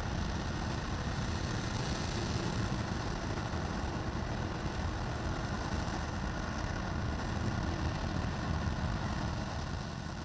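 RS-25 hydrogen-oxygen rocket engine firing on a test stand, heard from a distance as a steady, even roar with a deep rumble.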